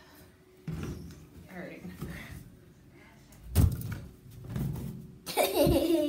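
Dull thumps of a Wubble Bubble inflatable ball being batted and bounced, the loudest about three and a half seconds in; a girl laughs near the end.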